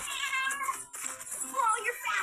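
AI-generated soundtrack of a cat meowing: two drawn-out meows, the second bending down in pitch near the end, over a steady hiss.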